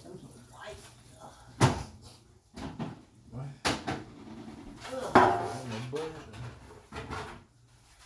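A few sharp knocks and clatter of kitchen doors and things being handled, the loudest about a second and a half in and again about five seconds in.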